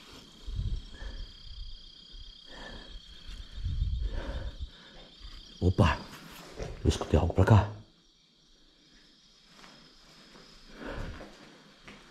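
Crickets chirping steadily in a high band, fading about six seconds in. Over them come irregular rustling and thumping from footsteps and camera handling, loudest around six to eight seconds in.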